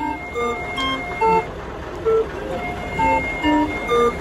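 Hand-cranked Hofbauer Harmonipan barrel organ playing a tune: a melody of short pipe notes, two or three a second, over a held high note.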